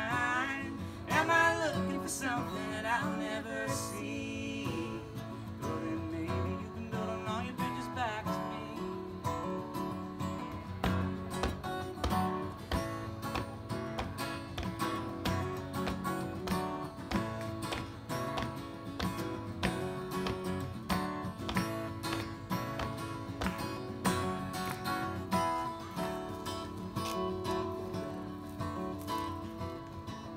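Steel-string acoustic guitar strummed in a steady rhythm through an instrumental break in a folk song. A voice sings a wavering line over it in the first few seconds.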